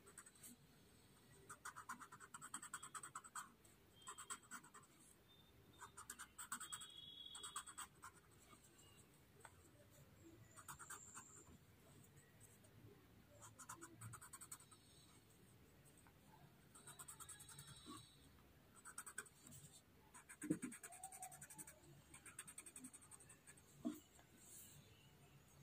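Faint, scratchy rubbing of a blending tool smoothing pencil graphite on a paper drawing tile, in short strokes that come and go. A single soft knock about twenty seconds in.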